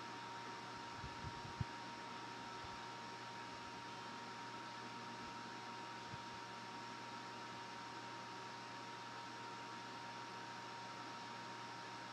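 Steady, even hiss with a thin, steady high whine running through it, and a few faint low bumps about a second in.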